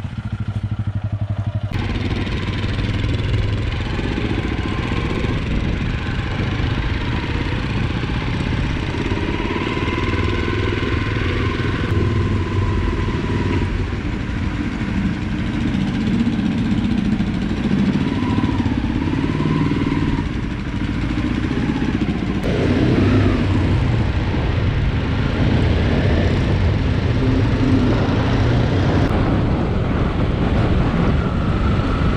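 Honda CRF300L Rally motorcycle engine running while being ridden, its note rising and falling with the throttle, over road and wind noise. The sound changes abruptly several times as separate riding clips follow one another.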